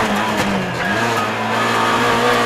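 Rally car engine heard from inside the cockpit, running at fairly steady revs as a steady drone, its pitch dipping briefly about half a second in before levelling again.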